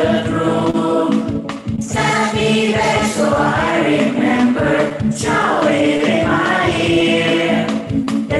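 Children's choir singing a song, with short breaks between phrases about a second and a half in and again about five seconds in.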